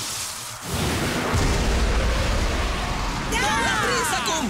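Cartoon explosion sound effect for an anime special-move attack: a deep, rumbling blast that starts suddenly about a second in and runs for a couple of seconds, followed near the end by shouting voices.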